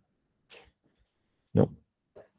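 Near silence, then one short spoken word, "no", about one and a half seconds in, with a faint brief sound just before it.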